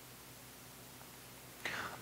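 Faint room tone of a sermon recording: steady low hiss with a faint hum. Near the end comes a brief, breathy intake of breath just before speech resumes.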